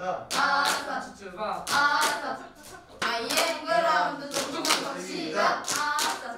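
A small group clapping in rhythm for a clap-and-chant game, with voices calling out words in time between the claps.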